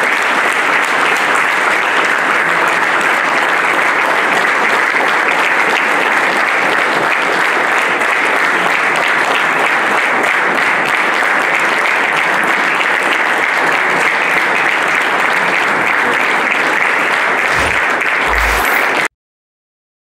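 Sustained applause from an audience, dense and steady, cutting off suddenly near the end.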